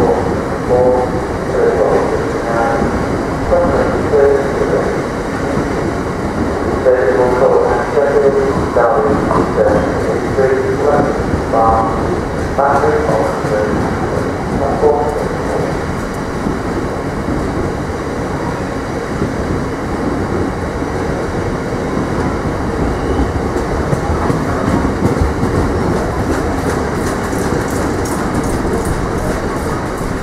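A Class 66 diesel freight train of coal hopper wagons rolling past at low speed over station pointwork, its wheels making a steady noise with no let-up.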